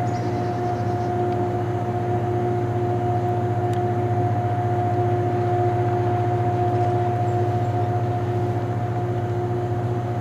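Harsco rail grinder train running as it approaches: a steady low drone with a constant high whine held over it, rising a little in loudness around the middle.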